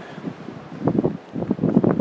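Wind buffeting the microphone, coming and going in gusts.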